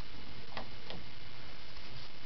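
Two short clicks about a third of a second apart over a steady background hiss: a bathroom wall light switch being flicked on.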